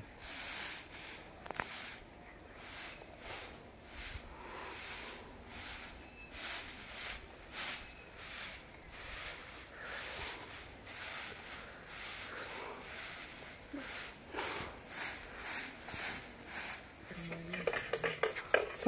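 Dry grass broom (jhadu) sweeping packed earth, one swish about every half second in a steady rhythm.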